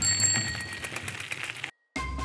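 Bicycle bell rung as a cartoon sound effect: a bright ring just after the start that dies away over about a second. Near the end the sound drops out briefly.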